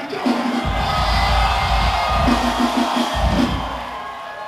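Live rock band playing a loud burst of drums, bass and guitars as a crowd cheers. It kicks in about half a second in, breaks off briefly near three seconds and dies down near the end.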